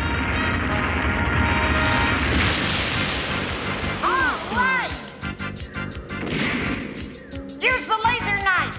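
Cartoon rumbling and crashing of rock as a robot lion bores through it, with background music. About four seconds in there are two short, excited shouts.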